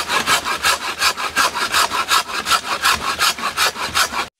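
Pole pruning saw with a curved blade cutting through a cocoa tree branch in quick, even strokes, about six a second.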